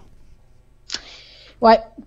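A pause in a studio conversation with a faint low hum. About a second in comes a short rush of noise, then a man's voice says "ouais" briefly near the end.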